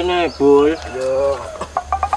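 Chicken clucking: three drawn-out, pitched calls, followed near the end by a quick run of short ticks.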